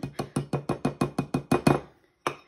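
Rapid, even tapping on the clear plastic bowl of an electric spice grinder, about eight knocks a second, knocking freshly ground black pepper out of it. The tapping stops just before the end.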